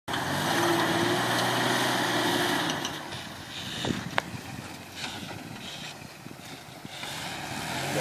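Lifted rock-crawling SUV's engine revving hard as it climbs a rock ledge, then easing off. About four seconds in there is a sharp crack, the sound of something on the truck breaking. The engine runs low for a few seconds, then revs up again near the end.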